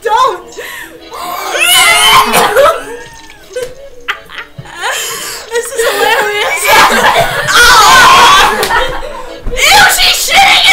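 Several young women laughing hard and shrieking together with unclear exclamations, getting louder and more frantic in the last few seconds.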